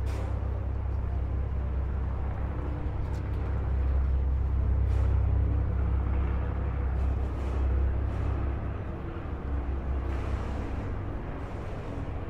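A steady low rumble with a general outdoor noise haze over it, swelling slightly in the middle and easing toward the end.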